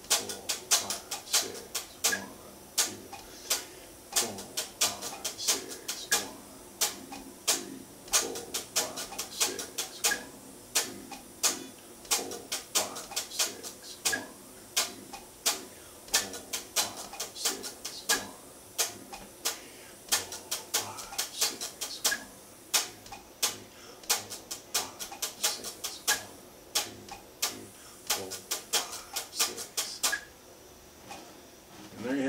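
Electric guitar strummed in short, clicky, percussive strokes, playing a polyrhythm of six on four with nine-on-two triplet subdivisions. The strokes come in quick uneven clusters, with faint pitched notes under the clicks.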